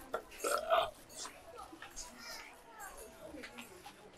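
A man's burp about half a second in, after a swig of cola.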